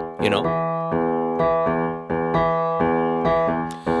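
Digital piano playing a repeating left-hand bass line in the low register, octaves struck with the thumb and pinky in a steady rhythm.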